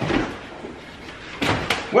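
Kitchen clatter: a thump at the start, then a few sharp knocks about a second and a half in, like a cupboard door being shut.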